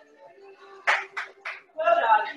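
Background music with three quick hand claps about a second in, each a third of a second apart, and a voice coming in near the end.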